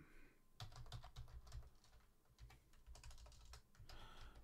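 Faint typing on a computer keyboard: a quick, irregular run of keystroke clicks.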